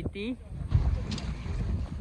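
Wind buffeting the phone's microphone: an uneven low rumble that rises and falls, after a single spoken word at the start.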